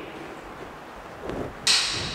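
Quiet room hiss, then a sudden short rush of high-pitched noise near the end that fades within about half a second.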